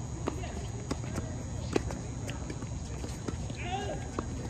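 Tennis balls popping off rackets and bouncing on a hard court during a rally, a series of sharp knocks at irregular intervals. A short voice calls out near the end.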